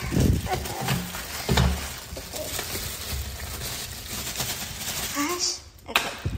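Plastic shopping bag rustling as packaged purchases are rummaged through and lifted out, with a few dull knocks in the first two seconds.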